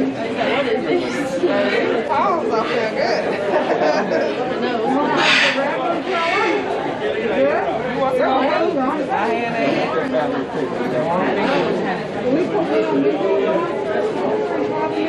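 Several people talking over one another in steady chatter, with no single clear voice.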